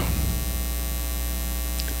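Steady electrical mains hum with a stack of evenly spaced overtones.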